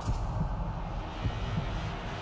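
A low, steady rumbling drone with a few soft heartbeat-like thumps: the tension underscore of a comic-horror film trailer.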